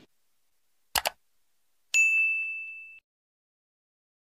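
Subscribe-button animation sound effects: a quick double click about a second in, then a bright bell ding about two seconds in that rings on one high tone for about a second, fading, and cuts off.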